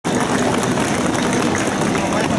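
Loud, dense noise of a street-festival crowd: a steady mass of voices and bustle, with no single sound standing out.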